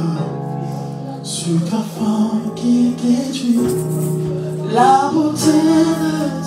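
Church worship song: a woman's voice sings over long held electric keyboard chords.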